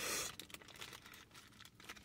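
Paper burger wrapper crinkling faintly as it is unwrapped by hand, with small irregular crackles that are a little louder at the very start.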